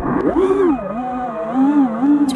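FPV quadcopter's brushless motors (Emax 2205 2300kv) whining, the pitch rising and falling several times with the throttle.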